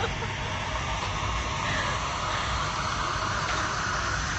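Steady background noise of an indoor public space, a low rumble with an even hiss and no distinct single event.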